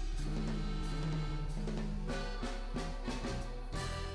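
Background music with drums and held notes.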